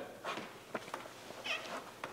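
Quiet room tone with a few faint clicks and a short high squeak about one and a half seconds in.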